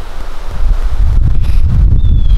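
Wind buffeting the microphone: a loud, gusty low rumble that grows stronger about half a second in.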